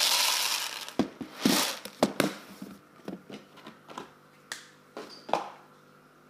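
Kitchen handling sounds: a short rattling rush at the start, like dry cereal pouring, then scattered knocks and clicks as a plastic cereal container, its lid and a plastic bowl are handled on a benchtop.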